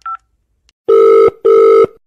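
Telephone call being placed: a last short keypad beep right at the start, then the ringback tone a caller hears while the line rings, a double ring of two loud steady tones, each about half a second long, starting about a second in.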